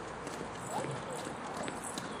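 Footsteps of a person and a dog walking together on a paving-stone path, a few light knocks spaced unevenly. Short, soft vocal sounds come in over them.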